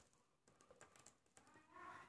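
Faint, light scattered clicks of papaya seeds dropping from a hollowed-out green papaya onto a plastic tablecloth, a little louder just before the end.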